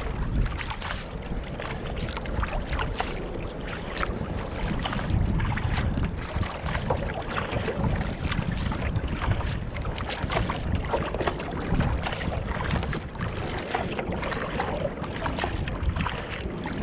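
Water splashing and lapping along the bow of a Fenn Bluefin-S surfski under way on choppy sea, in many short irregular splashes. Wind rumbles low and steady on the microphone.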